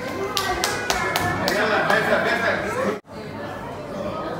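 Several people talking at once, with a few sharp clicks in the first second or so. The sound drops out suddenly for a moment about three seconds in.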